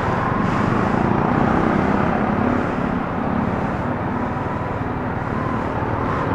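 Yamaha Sniper 155 VVA underbone motorcycle's single-cylinder engine running steadily while riding, under a constant rush of wind and road noise on the microphone.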